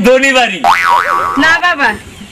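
A cartoon 'boing' sound effect about half a second in, its pitch springing up and down twice in under a second, set between bits of speech.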